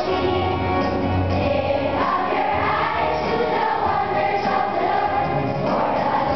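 A choir singing a church hymn in a large, echoing hall, with long held notes and no breaks.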